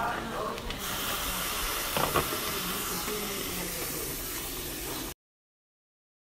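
Heavy rain, a loud, steady hiss that starts abruptly about a second in, with a couple of knocks about two seconds in, and cuts off suddenly a little after five seconds.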